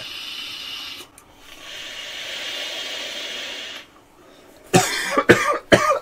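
A long hissing draw of breath and vapour through a Uwell Crown 3 vape tank's airflow, then a longer hissing breath out. Near the end, a few sharp coughs.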